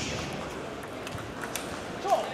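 Celluloid/plastic table tennis ball clicking off the rubber of the bats and bouncing on the table during a rally: a few sharp, irregular clicks over the background hum of a large hall.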